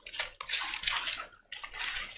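Bible pages turning and paper rustling on a lectern microphone, in several short, irregular rustles.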